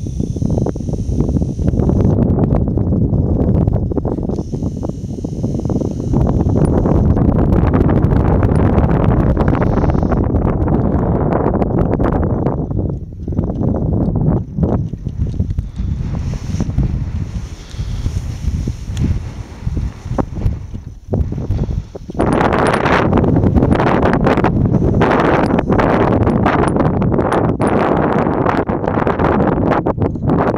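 Wind buffeting the camera's microphone in gusts, a loud rumbling noise that eases off for a few seconds past the middle and returns stronger near the end.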